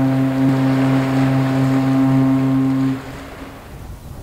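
A large ship's horn sounding one long, deep, steady blast that stops about three seconds in with a short echoing tail. After it, wind rumbles on the microphone.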